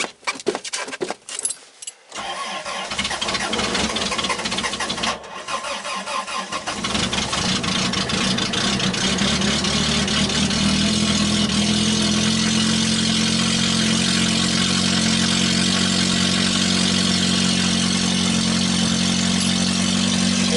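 A few clicks, then a Toyota Tercel's starter cranking the engine in a −30 °C cold start after three weeks sitting. After a short break in the cranking, the engine catches about six seconds in and runs, rising to a steady fast idle.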